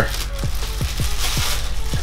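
Plastic press-and-seal wrap crinkling as it is peeled off a tub and crumpled up, over background music with a steady beat.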